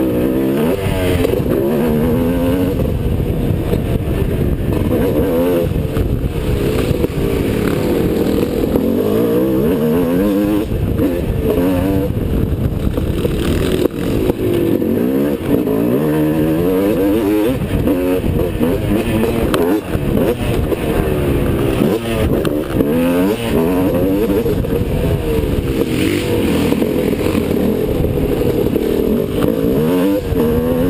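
Motocross dirt bike engine racing, heard close up from the rider's helmet: the pitch climbs and drops over and over as the rider works the throttle and shifts through the gears around the track.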